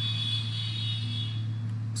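Steady low background hum, with a faint high-pitched whine over the first second and a half.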